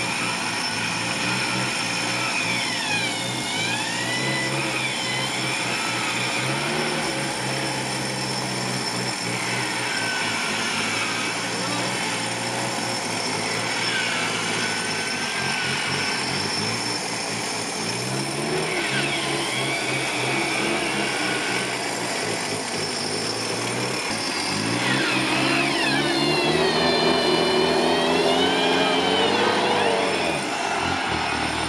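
A modified off-road 4x4's engine runs under load as the vehicle is winched up a steep muddy slope. Its pitch climbs for a few seconds near the end and then drops. Voices call out over it.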